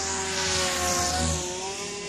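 Goblin 500 electric RC helicopter in flight: the whine of its motor and drivetrain over the rotor sound, its pitch sagging and then climbing back as it manoeuvres, loudest about halfway through.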